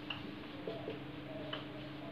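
Marker pen writing on a whiteboard: a few faint ticks and squeaks from the tip, over a steady low hum.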